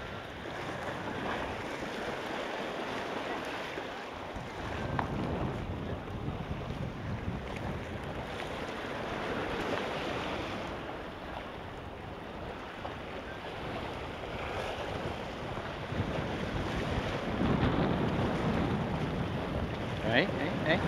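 Sea surf washing and breaking against the rocks of a breakwater, with wind buffeting the microphone. The wash swells with the waves, loudest near the end.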